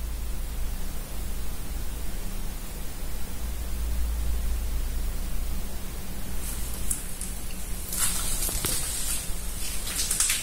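A steady low background hum, with rustling and a few faint clicks starting about eight seconds in.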